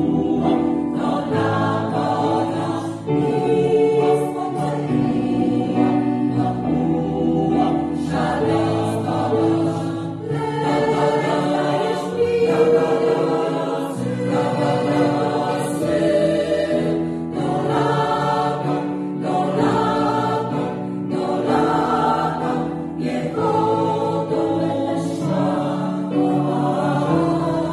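A choir, mostly women's voices, singing in sustained chords, phrase after phrase.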